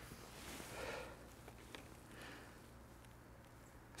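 Near silence: faint outdoor quiet with a couple of soft rustles in the first half and one tiny click.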